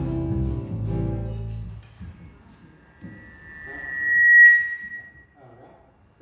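An acoustic guitar's last chord rings out and fades over the first two seconds. Then a PA system feeds back: a single high tone swells up, is loudest about four and a half seconds in, and dies away.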